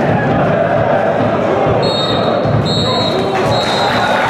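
Three blasts of a referee's whistle in the second half, each about half a second long, the signal for full time. They sound over steady crowd noise from the stands.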